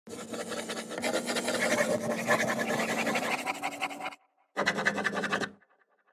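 Animated-logo intro sound effect: a dense, fast-ticking noise over a low steady hum for about four seconds that cuts off suddenly, then a second, shorter burst that fades out.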